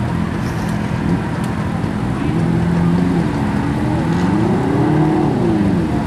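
Several vehicle engines idling together, with one revving up and back down a few times, most strongly about four to five seconds in.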